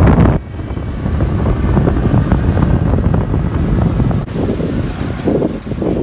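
Wind rushing over the microphone together with motorbike engine and road noise while riding in street traffic, broken by abrupt edits. Near the end it drops to a quieter background with faint voices.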